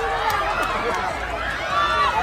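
A crowd of many voices calling and talking over one another, with no single clear speaker.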